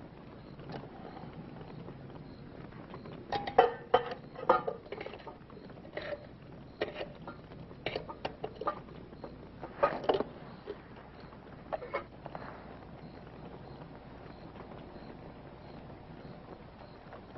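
Scattered small clicks and scuffs come irregularly, clustered between about three and twelve seconds in. Under them runs the steady hiss of an old film soundtrack.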